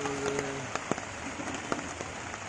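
Rain falling on a plastic tarpaulin overhead: a steady hiss with scattered sharp drop ticks. A low held pitched call fades out in the first half second or so.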